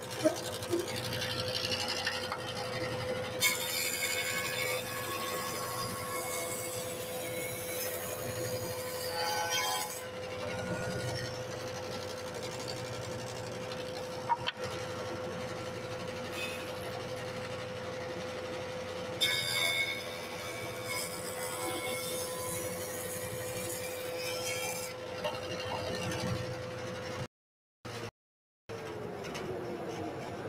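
A jointer runs with a steady hum. Twice a pine board is fed over its spinning cutterhead to cut a deep rabbet, each pass a loud cutting noise lasting several seconds. Near the end the sound cuts out briefly, and then the motor's pitch falls as the jointer winds down.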